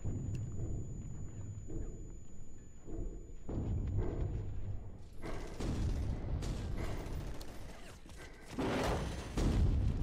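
Dramatic, film-style intro soundtrack: a low rumble with thuds and booms that swell louder several times, heard over the reactor's microphone.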